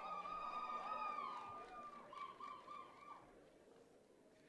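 Faint, high-pitched ululation from the audience: one long held trilling cry that dips slightly and breaks into short pieces before fading out about three seconds in.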